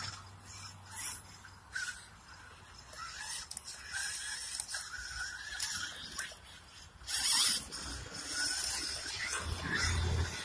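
A small electric 1/10 scale RC rock crawler, running on a low battery, driving through mud and shallow water: irregular splashing and squelching, loudest about seven seconds in.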